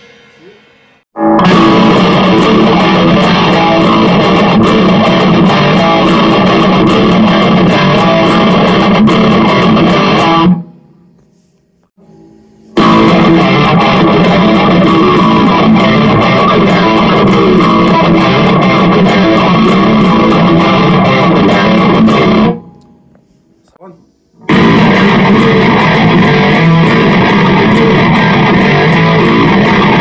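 Solo electric guitar playing heavy-metal riffs in three separate takes. Each take breaks off abruptly, with short silent gaps near the start, at about 11 s and at about 23 s.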